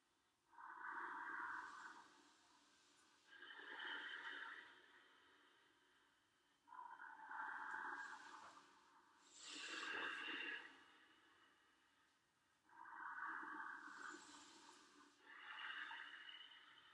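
Slow, deep breaths, soft but clearly audible: three in-and-out cycles, each breath a hiss of about two seconds with short pauses between.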